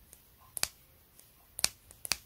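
Pet nail clipper squeezed shut and sprung open with no nail in it, its steel blades and spring clicking: two sharp double clicks about a second apart.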